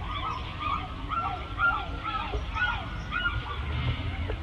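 Indian peafowl calling: a quick run of short rising-and-falling calls, several a second, that stops a little before the end. A low rumble runs underneath.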